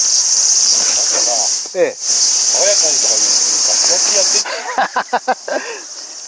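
Cicada buzzing loudly and steadily in two long, high-pitched stretches, breaking off for a moment about two seconds in and stopping suddenly at about four and a half seconds.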